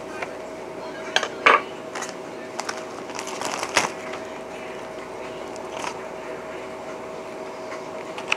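Brittle freeze-dried egg sheet snapping and crackling as it is broken up by hand on a metal freeze-dryer tray, the pieces going into a plastic zip bag. There are scattered sharp clicks and a short rustling crackle about three to four seconds in, over a steady low hum.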